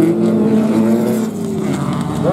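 Autocross race car engines running hard at high revs, holding a steady note that eases slightly after about a second.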